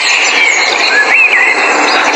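Bird calls: whistled chirps that glide up and down, the clearest rising then falling about a second in, over a steady loud rushing noise.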